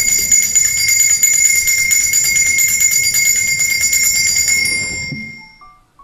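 Altar bells, a cluster of small bells shaken rapidly in a continuous peal, rung at the elevation of the consecrated host; the peal fades out about five seconds in. Soft instrumental notes begin just after.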